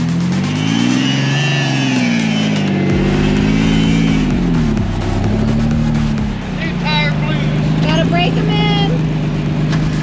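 Rock-crawling buggy's engine revving up and down as it climbs a rock ledge, then holding a steadier speed about six seconds in.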